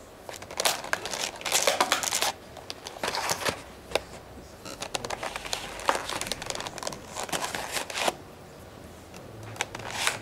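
A clear plastic punnet packed with crumpled paper, handled and pushed against a wall, its thin plastic and the paper inside crinkling and crackling in irregular bursts. It falls quiet near the end.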